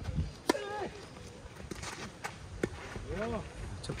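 Tennis ball struck by a racket on the serve, a sharp pop about half a second in. A few lighter pops follow as the return and rally are played, with brief voices in between.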